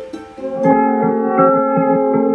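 Ukulele loop recorded on a microcassette and played through a Red Panda Particle 2 granular delay: plucked notes that overlap and ring on, growing louder about half a second in.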